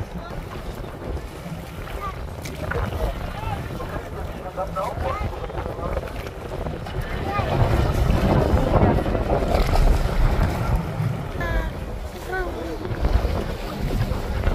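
Wind buffeting the microphone over boat engines and water on the open sea, growing louder about halfway through, with faint passengers' voices in the background.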